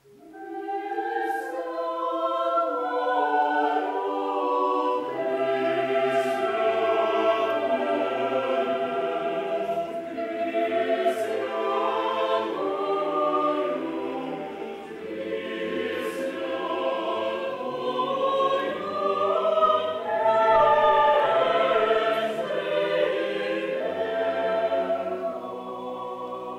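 Mixed choir of men's and women's voices singing Russian Orthodox liturgical chant a cappella. The singing starts out of silence, and the low bass voices come in about five seconds in.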